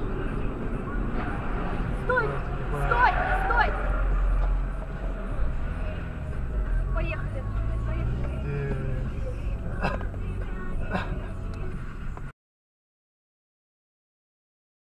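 Low, steady road and engine rumble inside a moving car, with short indistinct voice sounds early on and two sharp knocks near the end. The sound then cuts off abruptly.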